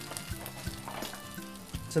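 Soft background music over the faint crackling sizzle of char siu pork strips just out of a hot oven, juices spitting on the foil-lined roasting tray.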